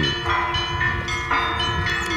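Church bells ringing: several bells sounding together, with fresh strokes about a second apart and the tones ringing on between them.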